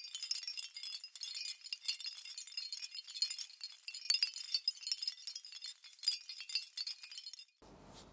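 Sparkling, tinkling sound effect of an animated video intro: a dense scatter of tiny high-pitched tinkles and clicks with nothing low beneath them. It cuts off abruptly shortly before the end, leaving faint room tone.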